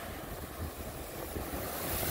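Ocean surf breaking and washing over exposed coral rocks, with wind rumbling on the microphone. Near the end a wave hits the rocks and the hiss of spray grows louder.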